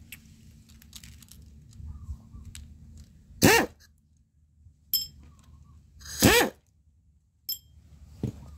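Two short, loud vocal bursts about three seconds apart, with two light metallic clinks in between and near the end as the parts of a small motorcycle cylinder head are handled.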